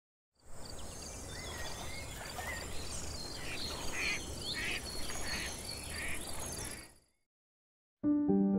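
Wetland nature ambience: a duck quacking about five times in a row midway, over small birds chirping and a fast, evenly repeating high-pitched pulsing call. It fades out about a second before the end.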